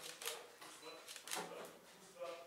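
Camera shutter clicking about three times, short sharp clicks, with faint voices in the room.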